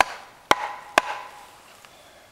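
Three sharp wooden knocks, about half a second apart, each ringing briefly: a wooden baton striking down on a piece of wood to drive a broken Mora knife blade through it and split it.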